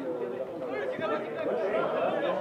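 Several voices talking and calling out over one another, the chatter of players and onlookers at a football match.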